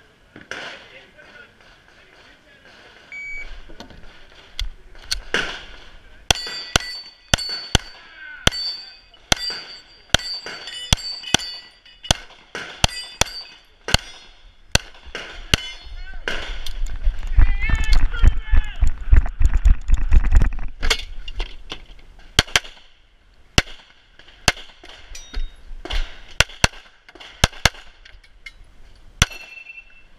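Pistol shots fired in strings at steel targets, many followed by the high ring of struck steel plates. A stretch of loud low rumble runs through the middle.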